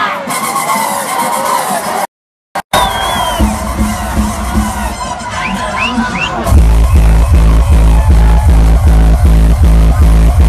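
Hardstyle dance music played loud over a parade truck's sound system with a crowd cheering and shouting; the sound cuts out for a moment about two seconds in. About six and a half seconds in, the heavy kick drum comes in, pounding evenly at about two and a half beats a second.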